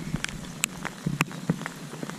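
Light rain: scattered drops ticking irregularly close to the microphone over a soft hiss.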